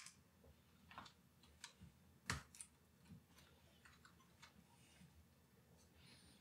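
Near silence with a few faint, sparse clicks and small knocks as a laptop hard drive in its metal bracket is handled and lifted out of an aluminium laptop case. The loudest knock comes about two seconds in.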